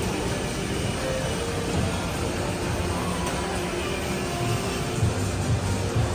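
Background music playing over a steady low rumble of machinery and room noise, with no sudden events.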